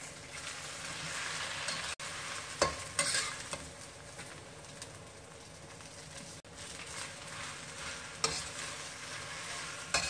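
Baby spinach sizzling in hot oil in a wok as a metal spatula stirs and tosses it, with a few sharp clanks of the spatula against the wok.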